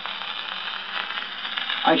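Surface noise of a 78 rpm shellac record playing on an acoustic gramophone: a steady hiss with fine crackles. A recorded voice begins near the end.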